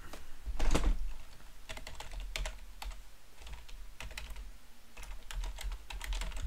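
Typing on a computer keyboard: irregular keystrokes, with a louder cluster of strokes about half a second to a second in.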